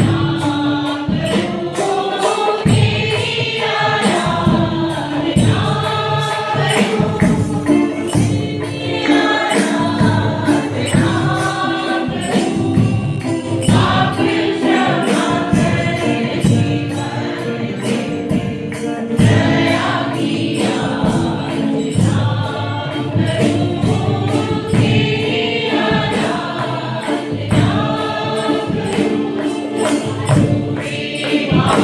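A mixed choir of women and men singing a worship song together, amplified through microphones, over a steady rhythmic percussion beat.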